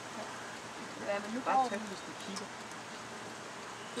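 A steady background hiss with a short, quiet human voice saying a word or two about a second in.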